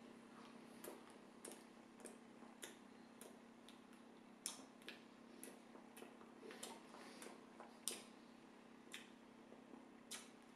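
Faint, regular mouth clicks of someone chewing a mouthful of bread with the mouth closed, about one and a half to two chews a second.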